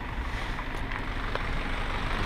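Steady outdoor background noise, heaviest in the low end, with a couple of faint clicks. The crow does not call.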